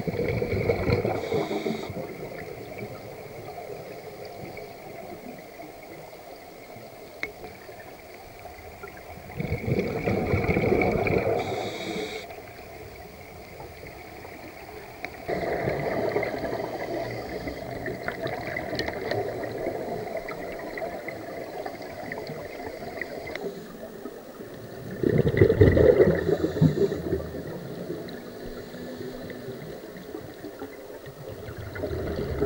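Scuba diver's exhaled bubbles gurgling and rumbling past an underwater camera in four bursts several seconds apart, the loudest near the end. Most of the bursts end with a short hiss.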